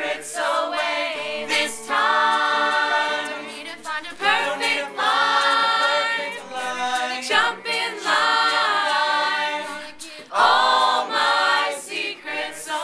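Mixed male and female a cappella vocal group singing in close harmony, in long held phrases with short breaks between them.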